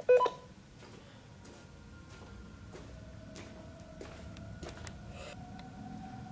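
A short, loud electronic beep right at the start, followed by a faint steady tone that slowly rises in pitch over a low rumble, with a few faint clicks.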